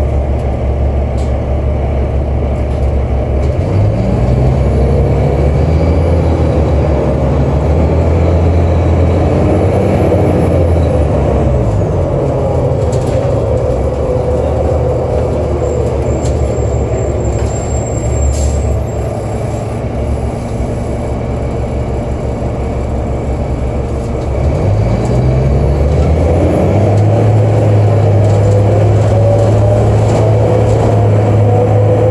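Cummins ISL diesel engine of a 2003 New Flyer D40LF transit bus heard from inside the cabin, driving through an Allison B400 automatic that has no torque-converter lock-up. The engine note climbs as the bus pulls away, drops back about 11 seconds in, and climbs again near the end before holding steady.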